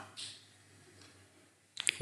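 A pause in a man's speech, close to a lapel microphone: his voice fades out, a faint short breath follows, and then a few quick mouth clicks come just before he speaks again.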